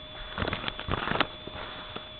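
Knife cutting open a cardboard box: a short run of crackles and clicks about half a second in, then one sharp click a little after.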